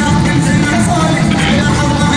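Music playing loudly and steadily over loudspeakers to accompany a choreographed musical fountain show.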